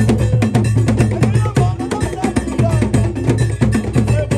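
Asante kete drum ensemble playing a fast, dense interlocking rhythm. Deep drum strokes sit under an iron bell pattern and higher drum tones.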